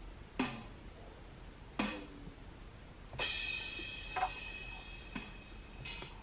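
Drum-kit sounds from a tablet drum-pad app, tapped out as a slow rhythm of single hits a second or so apart. The hit about three seconds in rings on for a second or more.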